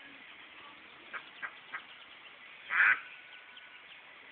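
Ducks quacking: three short quacks about a second in, then a louder, longer quack near the three-second mark.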